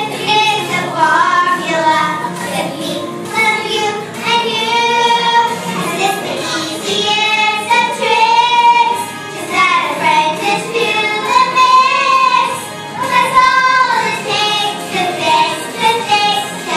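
Two young girls singing a song together into a stage microphone, with phrases of long held notes.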